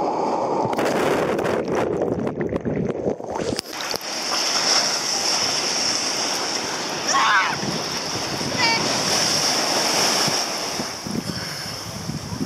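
Sea surf breaking over a bather at water level: a wave crashes and the water churns and splashes, sounding muffled for the first few seconds. After that comes an open wash of surf with wind on the microphone.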